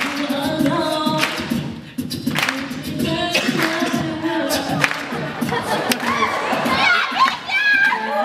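A cappella performance: a singer's voice over beatboxed vocal percussion, with sharp mouth-made drum hits and a steady hummed bass note, amplified through microphones.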